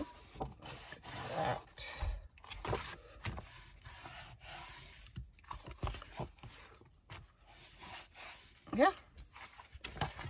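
Stiff file folders and paper being handled: rustling as the cover is opened and the pages turned, with short knocks of the folder against the cutting mat.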